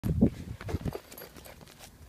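Footsteps crunching on a gravel path: a few loud steps in the first second, then quieter.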